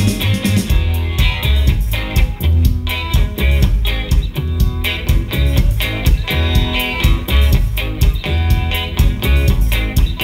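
Electric guitar played live in a rock song, an instrumental stretch with a steady beat and a heavy low end underneath and no singing.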